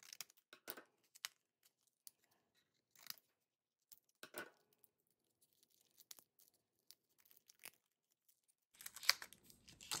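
Scissors snipping thin clear plastic shrink-wrap, then the plastic crinkling and tearing as it is peeled off by hand. Faint scattered clicks and crackles, louder about four seconds in and again near the end.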